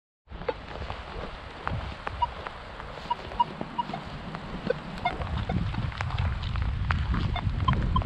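Minelab X-Terra Pro metal detector giving a few short, separate beeps as its coil is swept, over wind rumbling on the microphone and scattered clicks.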